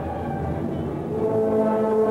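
Concert band playing, brass to the fore, moving into louder held chords about a second in.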